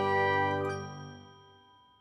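Closing jingle of an animated logo sting: a held, bell-like chord that rings on and fades away over about a second and a half.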